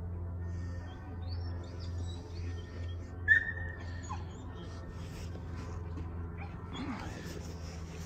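Short, high whistled chirps over a steady low hum, with one much louder chirp about three seconds in and a falling glide just after it.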